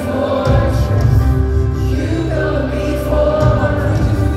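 Live contemporary worship music in a large arena, heard from the seats: a band holding sustained chords while many voices sing together. The bass comes back in about half a second in.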